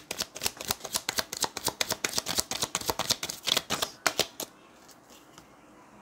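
A deck of tarot cards being shuffled by hand, a quick run of riffling card clicks that stops about four and a half seconds in.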